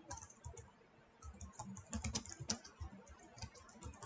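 Faint computer keyboard typing: a string of quick key clicks, sparse at first and, after a short pause about a second in, a steady run of keystrokes.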